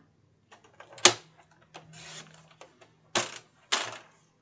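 Sliding-blade paper trimmer cutting gold foil card: a sharp click about a second in, a soft rustle of the card, then two short cutting strokes of the blade about half a second apart near the end.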